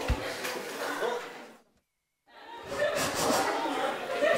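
Audience chatter and light laughter in a hall, with no single voice standing out. A little over a second and a half in it drops to total silence for under a second, a cut in the recording, and then the chatter resumes.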